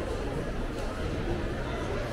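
Shopping mall concourse ambience: indistinct chatter of many shoppers in a large hard-floored hall, with a steady background hubbub.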